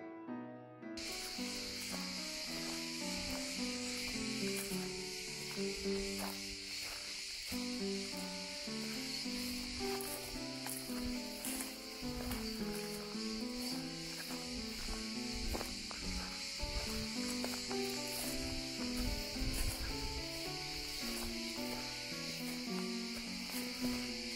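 Calm background music, joined about a second in by a steady, dense, high-pitched cicada chorus that holds throughout.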